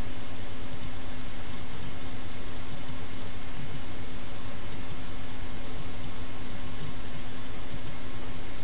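A steady, even hum with a low tone under a hiss, unchanged throughout.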